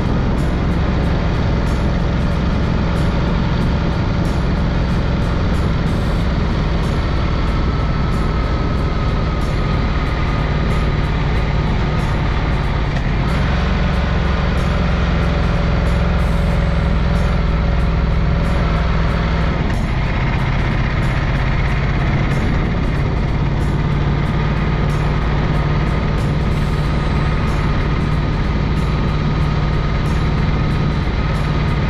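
Ducati XDiavel S V-twin engine running steadily under way, mixed with wind rush on the microphone. The engine note shifts twice, about 13 and 20 seconds in.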